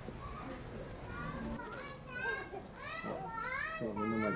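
Children's voices: high-pitched calling and chattering that starts faint and grows louder and more frequent from about halfway in, the pitch swooping up and down.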